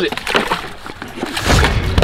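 A large fish thrashing inside a plastic cooler: knocks and water sloshing, with a heavier burst of thumping near the end.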